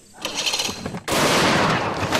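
Outboard motor on a bass boat starting suddenly at full throttle: about a second in, a sudden very loud blast of engine noise that keeps going as the boat lurches forward.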